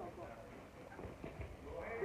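Faint, indistinct children's voices with scattered footsteps on artificial turf in a large indoor hall.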